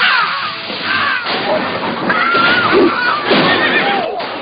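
A man screaming in a high-pitched voice, several separate cries one after another over a noisy background.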